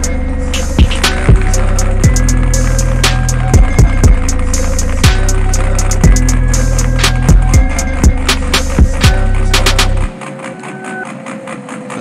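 Instrumental hip hop beat: long, deep held bass notes with sharp percussion ticks over a steady synth melody. About ten seconds in the bass cuts out and the beat drops to a quieter melody.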